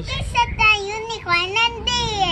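A young girl's high-pitched, wordless sing-song voice, giggly and squealing, its pitch sliding up and down in several short phrases.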